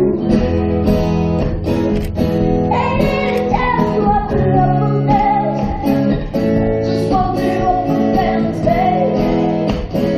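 Live acoustic pop performance: strummed guitar chords with a woman singing over them, her held notes wavering with vibrato.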